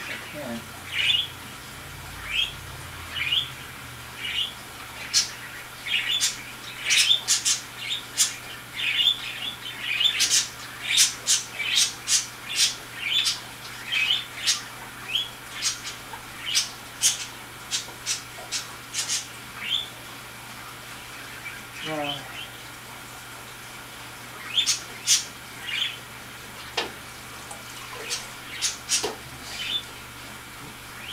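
A bird chirping over and over, short falling calls mixed with sharp clicks and squawks, about one or two a second, with a brief lull near the middle.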